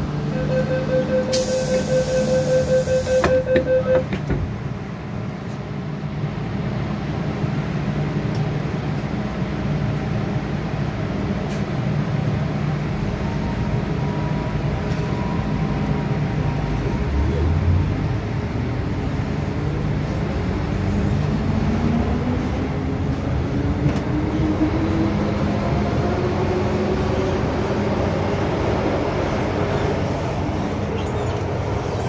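MTR M-Train stopped at a platform: a rapid beeping warning sounds for the first few seconds over a burst of hiss, ending in a thud as the doors shut. After a steady rumble, from a little past halfway the traction motors' whine rises in pitch as the train pulls away and accelerates.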